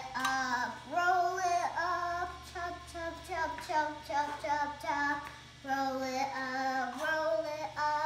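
A young girl singing a wordless tune in a string of held notes that rise and fall in pitch, with short breaks between phrases.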